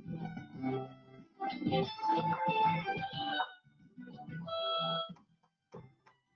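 Violin music played over a video-conference audio stream, in phrases of held notes broken by short drop-outs; the music gives out about five seconds in. It comes through poorly because the conferencing software carries voice better than music.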